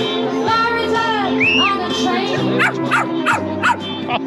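A dog whining once, with a cry that rises and falls, then giving four short yaps in quick succession in the second half, over music.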